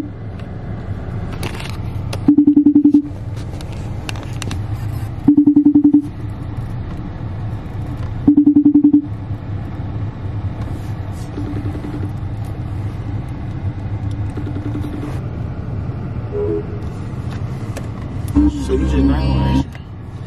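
iPhone FaceTime outgoing ringing tone. Three loud rings about three seconds apart, then two fainter rings at the same pace, over the low steady noise of a car interior. The call goes unanswered, and there is a louder low burst of sound near the end.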